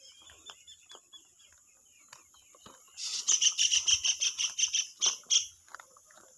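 A bird calling with a fast run of sharp, evenly spaced chirps, about seven a second, for some two and a half seconds from halfway through, after a fainter run of chirps in the first second. Footsteps on the road sound faintly underneath.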